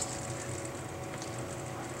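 Steady room tone: a low hum with a faint even hiss, and no other events.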